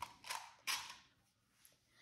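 Three brief handling sounds within about a second as a plastic cup is handled and set down on a hardwood floor.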